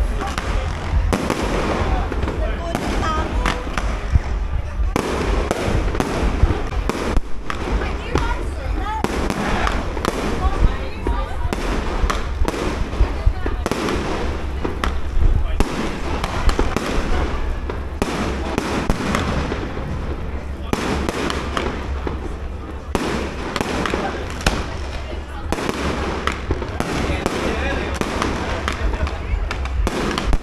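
Fireworks display: a continuous run of sharp bangs and crackling aerial bursts, with people talking underneath.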